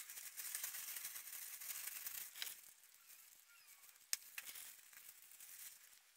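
Thin plastic crinkling and rustling as disposable plastic gloves from a hair-dye kit are handled and pulled on. The rustling is dense for the first two seconds or so, then softer, with a sharp click about four seconds in.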